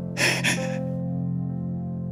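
A woman's sob, two quick gasping breaths in the first second, over slow, sustained background music chords.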